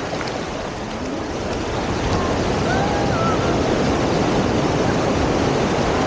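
Shallow surf washing up and back over a sandy beach at the water's edge, a steady rush that swells louder about two seconds in.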